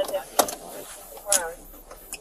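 Brief fragments of a man's voice, with a single sharp click about half a second in.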